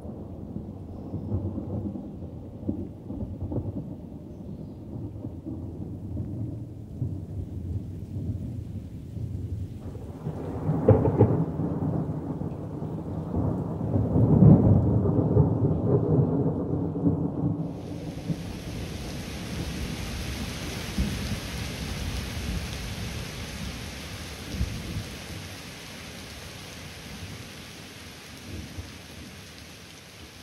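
Thunder rolling in a low rumble that swells twice, loudest at about eleven and fifteen seconds in. Heavy rain then sets in suddenly with a steady hiss that slowly fades toward the end.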